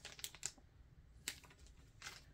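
Faint handling noise of a cardboard vinyl record sleeve: a few quick light clicks and taps in the first half-second, then one more tap a little over a second in.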